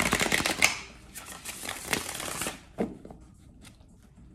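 A tarot deck being shuffled by hand: a fast flutter of cards that breaks off under a second in, a second run from about one to two and a half seconds, then a few single card clicks.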